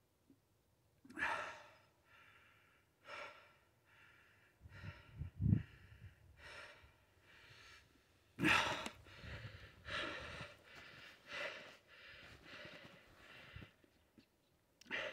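A person breathing in short, repeated puffs and sighs close to the microphone, with a chainsaw not running. There is a dull low thud about five seconds in.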